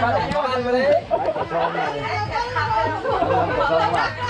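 Several men talking at once in overlapping, unclear conversation.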